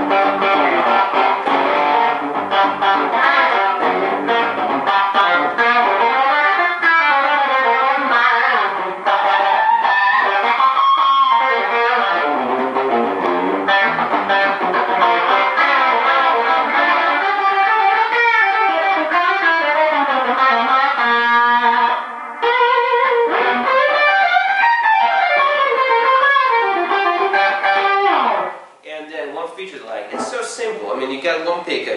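Gibson '57 Les Paul Junior reissue with a Seymour Duncan '78 Model pickup, played through a Fender Deluxe Reverb amp with a touch of compression and overdrive. It plays a rock passage of single-note lines with bent notes. The playing pauses briefly about three-quarters of the way in and stops shortly before the end.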